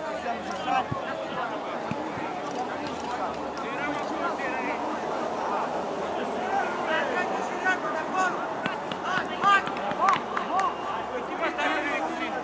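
Indistinct voices of football spectators and players talking and calling out, overlapping one another, with a few louder shouts about ten seconds in.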